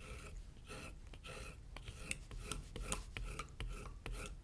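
Faint, irregular scraping strokes of a hand skiving blade shaving the back side of a vegetable-tanned leather tail fin, thinning its edge down.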